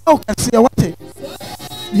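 Background music with sharp beat-like hits, and a voice calling out short exclamations over it.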